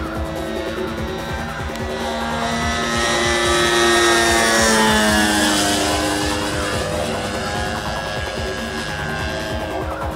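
Gasoline two-stroke engine of a large RC aerobatic plane (a DLE-55 single-cylinder) flying past, swelling to its loudest about four to five seconds in and then fading, with music playing throughout.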